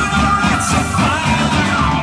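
Live rock band playing a song, a lead singer's voice gliding over the band's bass and drums.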